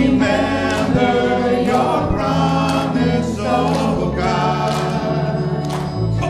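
Small worship band playing a contemporary worship song, several voices singing together over bass guitar, acoustic guitar and electric guitar.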